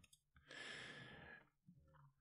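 A man's faint sigh, a single breathy outbreath lasting just under a second.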